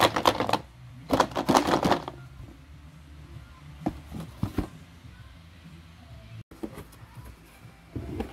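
Clatter of rapid clicks and rattles from the boxed toys and their packaging being handled, in two bursts within the first two seconds, then a few lighter knocks around the middle.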